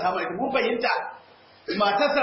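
A man's voice speaking in a lecture, with a short pause a little past a second in.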